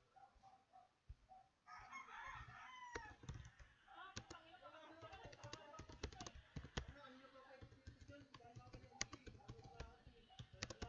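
Computer keyboard typing: quiet, quick key clicks from about three seconds in. Just before the typing starts, a faint wavering call rises and falls in the background.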